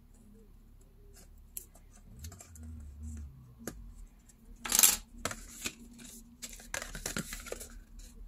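Small metal craft scissors making a few quiet snips in printed card stock, then a sharp, louder handling sound just before five seconds in, followed by the rustle and creasing of the card as it is folded.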